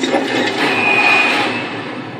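Film trailer sound effects: a loud, dense rushing noise like a moving vehicle, with a steady high-pitched squeal in the middle, fading away near the end.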